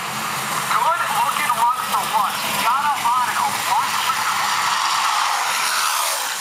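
A public-address announcer's voice, distorted and hard to make out, over loud, steady background noise. The noise turns into a brighter hiss for the last couple of seconds.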